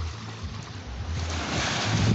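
Wind on the microphone and small waves lapping along the lake shore, a wash of noise that swells about a second in.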